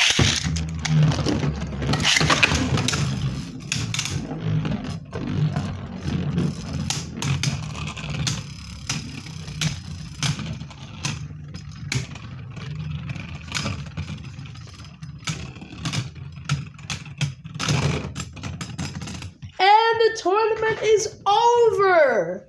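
Two Beyblade spinning tops are launched into a plastic stadium bowl and spin against each other: a steady low whirr with many quick clicks and knocks as they collide. They wind down about 19 seconds in, and a man's voice exclaims in the last two seconds.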